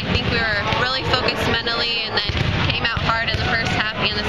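Only speech: a woman talking steadily, answering an interview question.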